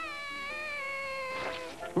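A cartoon character's long drawn-out wailing cry, held for about two seconds and sliding slightly down in pitch, over soft background music.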